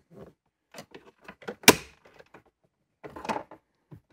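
Plastic dash trim panel being pried off with a plastic trim tool: a series of light plastic clicks and one loud sharp snap about one and a half seconds in as a retaining clip lets go, then another quick cluster of clicks near the end.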